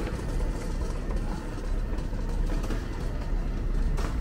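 City street traffic: a steady low rumble of vehicles running past, with a few faint ticks over it.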